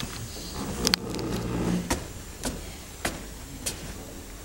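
A few sharp knocks, irregular and roughly half a second or more apart, footsteps on a stage floor, over a low rumble of hall room noise that swells for a second or so.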